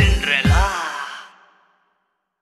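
A pop song ending: two last low drum hits about half a second apart under a final voice-like note that bends in pitch, then the music fades out to silence about a second and a half in.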